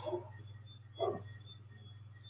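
Pause in a conversation over a call microphone: a steady low electrical hum with faint, regular high-pitched chirps about three a second. There is one short vocal sound about a second in.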